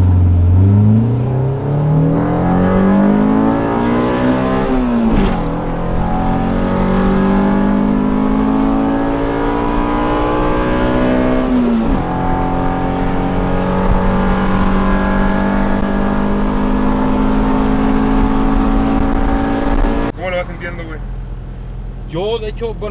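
Honda Civic EG's swapped-in Integra GSR DOHC VTEC four-cylinder, heard from inside the cabin, pulling hard through the gears on a test run of its new tune. It revs high, drops in pitch at two upshifts about five and twelve seconds in, climbs again, and falls off when the throttle is lifted near the end.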